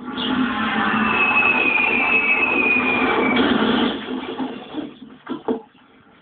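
Television sound played loud, with the volume turned up high: dense programme audio with a thin, slowly falling tone over it. It drops away about four seconds in, and a couple of short knocks follow.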